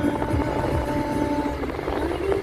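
Road and engine noise inside a moving car's cabin, a steady low rumble, with background music holding long notes over it.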